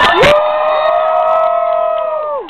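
A single voice holding one long, high 'woo' cheer: it slides up into the note just after the start, then holds it steady at one pitch.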